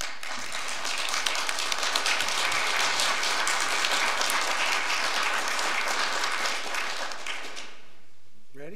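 Audience applauding, a dense patter of many hands clapping that dies away shortly before the end.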